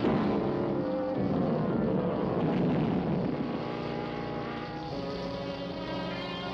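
A cartoon sound effect: a loud rushing, rumbling noise that starts suddenly, mixed with orchestral background music. After about three and a half seconds the noise fades and the music carries on.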